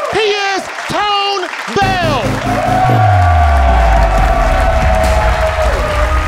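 A man singing a short line with a wavering, vibrato voice into a microphone, ending in a downward slide about two seconds in. A band then comes in with a deep bass note sliding down under a long held note, with applause underneath.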